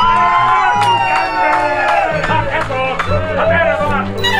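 A crowd cheering and whooping over background music with a steady bass line; a long, slowly falling whoop stands out in the first two seconds.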